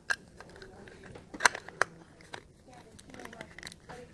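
Plastic junction box cover being handled and fitted against the scooter's aluminium frame: a few light clicks and knocks, the sharpest about a second and a half in.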